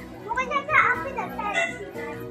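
A child's high voice calling out for about a second and a half, over background music with steady held tones.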